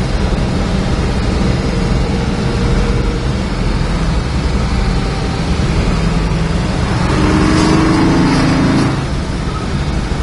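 426 Max Wedge V8 of a 1963 Dodge Polara running at a steady cruise, heard from inside the cabin with road and tyre noise. About seven seconds in, an oncoming truck passes with a brief rising whoosh that fades a couple of seconds later.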